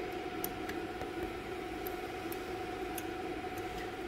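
Steady hum of a powered fiber laser marking machine, a constant mid-pitched tone over a noisy background, with a few faint light ticks.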